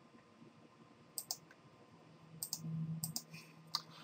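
Computer mouse button clicks, several short sharp clicks mostly in close pairs, with a faint low hum from about halfway through.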